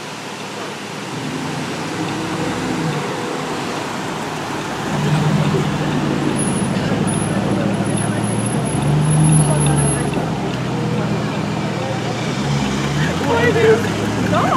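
Aston Martin DBX prototype's engine driving off slowly in city traffic, its low exhaust note swelling about five seconds in and again around nine seconds, over street traffic noise.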